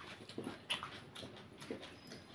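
Close-miked eating sounds: a bite into a slice of raw cucumber and chewing, with irregular crunches and mouth smacks. The sharpest crunch comes about two-thirds of a second in.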